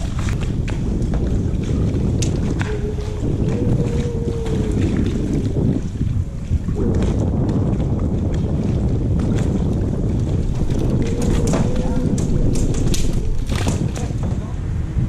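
Wind buffeting the microphone, a steady low rumble throughout. A faint steady tone comes in twice, and a few sharp clicks come near the end.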